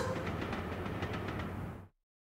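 Electric commuter train running on the tracks, a steady rumble with faint clicks of the wheels, cutting off suddenly just before the end.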